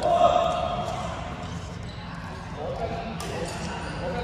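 Echoing sports-hall sound with players' voices: a loud, drawn-out call right at the start, some quieter talk later, and a few light knocks of footsteps on the wooden court floor.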